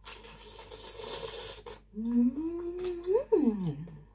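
A woman eating spicy food makes a long, airy sucking sound at her mouth for nearly two seconds. She then hums a long closed-mouth 'mmm' that rises in pitch, holds and drops sharply.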